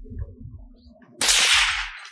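Some low rumbling, then a little over a second in a sudden, loud swish that lasts about half a second and fades: a whip-like whoosh transition effect.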